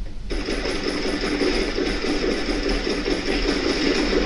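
A machine running with a loud, steady, rapid rattle, starting suddenly just after the start, with a fast regular ticking on top.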